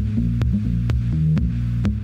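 Electronic music: low bass synth notes that change pitch about every half second, under a sharp click that falls about twice a second.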